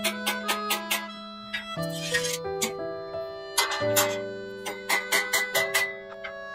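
Background music with sustained notes, over a quick, irregular series of sharp taps from a rubber mallet knocking a steel shelf beam down into its slotted upright.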